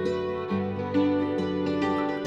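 Instrumental Celtic folk music led by hammered dulcimer, its struck strings ringing on through a steady run of melody notes.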